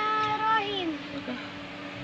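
A child's voice holding a long sung note that slides down in pitch and stops about a second in, over a steady low hum.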